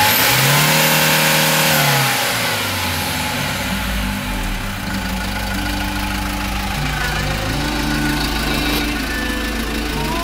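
The Kia Bongo III's diesel engine is briefly revved in the first two seconds, then settles to a steady idle for the rest.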